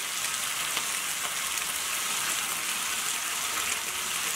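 Capsicum, onion and garlic sizzling steadily in hot oil in a non-stick frying pan, with red chilli sauce just added.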